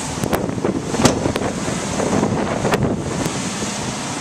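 Wind buffeting a handheld camera's microphone, a rough, steady rumble and hiss. A few sharp knocks, likely from handling, come through about a third of a second in, around one second in and near three seconds in.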